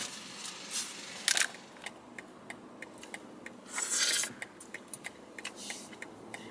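Quiet rustling and rubbing handling noise with scattered small clicks. Two brief hissy rubs stand out, about a second and a half in and again around four seconds in.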